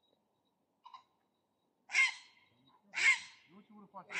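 A bird calling with loud, harsh, crow-like caws: a faint short note about a second in, then two caws about a second apart.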